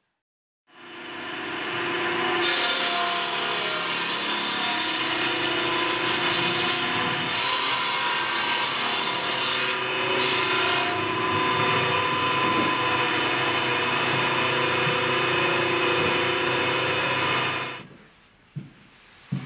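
Stationary woodworking machine running steadily and cutting a rough hardwood board. The cutting noise turns harsher during two long passes, and the sound cuts off just before the end.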